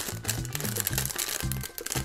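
Foil sachet crinkling and rustling in the hands as it is opened, over background music with a steady bass line.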